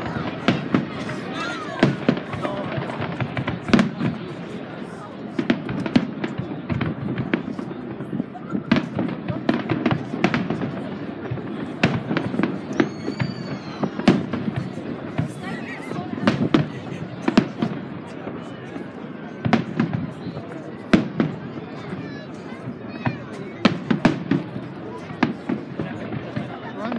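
Fireworks display: aerial shells bursting in an irregular run of sharp bangs and crackles, many a second at times, over a steady rumble.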